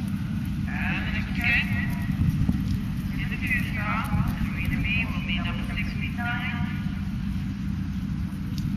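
High-pitched voices talking at a distance, the words unclear, in two stretches: one about a second in and one from about three to nearly seven seconds in. Under them runs a steady low rumble.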